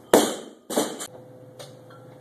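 Loaded barbell dropped onto a wooden lifting platform: a loud impact, a second hit as it bounces about half a second later, then a small knock as it settles.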